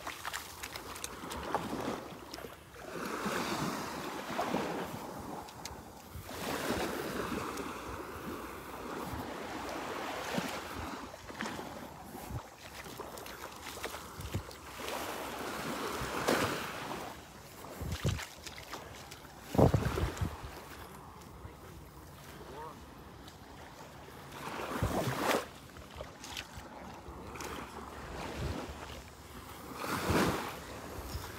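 Small calm-sea waves lapping and washing up onto a sandy shore, swelling and fading every few seconds, with occasional gusts of wind buffeting the microphone.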